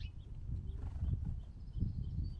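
Irregular low knocks on a platform feeder's tray as a scrub-jay pecks and shifts among the seed and nut pieces, about one knock every half second. A short high chirp sounds right at the start.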